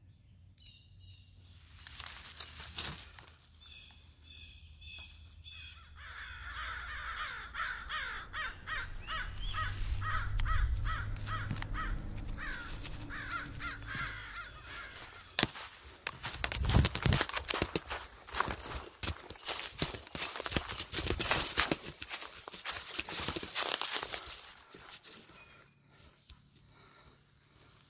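A run of rapid, evenly repeated harsh calls from an animal in the middle. In the second half it gives way to footsteps crunching through dry leaf litter on the forest floor, which are the loudest part.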